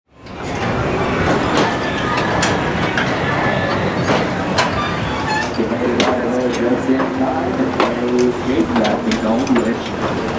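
Mine-ride train running on its track, a steady rumble with repeated clacks and knocks, amid people's voices. From about halfway, a person's long, drawn-out voice wavers toward the end.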